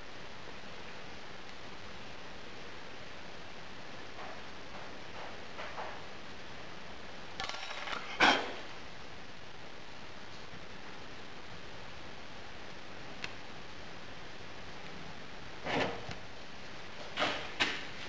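Brief, faint scrapes of a thin wire hand tool and fingers against moulding sand as a pouring cup is cut into a sand mould, loose sand crumbling away. The scrapes come a few times over a steady hiss, the loudest about eight seconds in.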